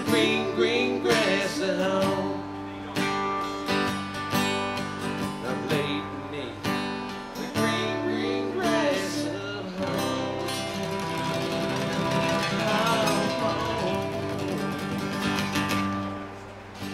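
Two acoustic guitars playing a song live, with steady strummed chords throughout.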